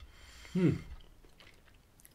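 A man chewing a mouthful of soft fondant-iced sponge cake with his mouth closed, with a short appreciative "hmm" falling in pitch about half a second in, then a few faint mouth clicks.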